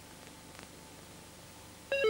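A quiet pause with faint hiss, then near the end a short electronic beep starts abruptly: the first tone of the beeping sequence that opens the next advert.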